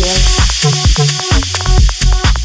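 Techno track playing: a steady four-on-the-floor kick drum with a pulsing synth bass, and a bright hissing noise layer over the top that comes in right at the start.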